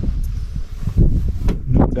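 Wind buffeting the microphone aboard a moving sailboat: a loud, uneven low rumble. A man's voice starts near the end.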